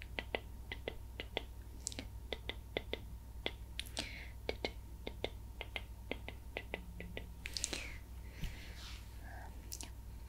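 Close-miked ASMR mouth sounds: a rapid run of soft, wet tongue-and-lip clicks, about three or four a second, with a few breathy whispers in between.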